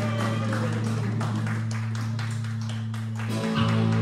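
Live rock band music: an electric bass holds a low sustained note under rhythmic strummed guitar, and the bass shifts to a new note about three and a half seconds in.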